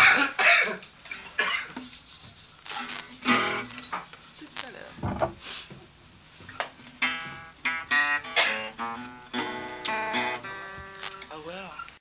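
Laughter in the first second, then wordless music-like sounds: short pitched notes and held tones, some sliding in pitch near the end.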